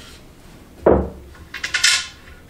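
A pool jump shot: one sharp knock of the cue about a second in, then a quick clatter of pool balls knocking against the cue sticks laid across the table, a sign that some balls failed to clear the cues.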